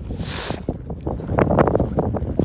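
Wind rumbling and buffeting on the microphone, with a hissy gust in the first half-second. Irregular short crunches run through it, thickest a little past the middle, fitting steps through dry grass.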